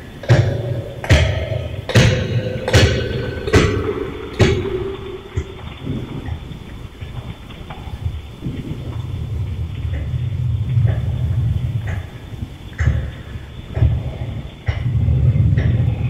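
A run of sharp thuds, about one a second, over a low steady hum for the first few seconds; after that the hum carries on with a few scattered knocks.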